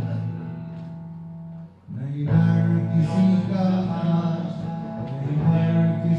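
Acoustic guitar playing chords. A chord rings and fades, there is a brief gap just before two seconds in, then the strumming starts again.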